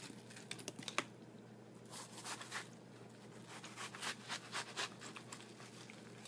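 Chef's knife cutting through peeled watermelon on a cutting board: faint, scattered crunching and light taps of the blade against the board, with a sharper click about a second in.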